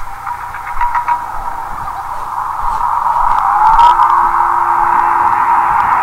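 Documentary soundtrack sound design: a muffled, swelling whoosh that grows louder about halfway through, with a rising whistle-like glide and a low steady tone under it, all narrow and dull as if recorded off a television.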